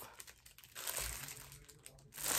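Plastic bag crinkling softly as it is handled, starting about a second in and fading away.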